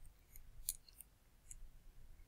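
A few faint, light clicks and taps of a stylus on a pen tablet, spaced irregularly over about a second and a half, over near-silent room tone.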